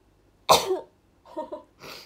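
A woman coughing into her hands: one loud cough about half a second in, followed by two quieter ones.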